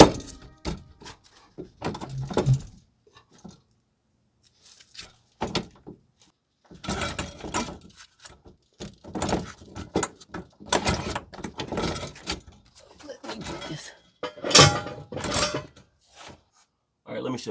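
Hand-work on a steel carrier bearing drop bracket under a truck: irregular metallic clinks, knocks and rattles of bolts, hardware and tools being handled, with short pauses between them and a sharper knock near the end.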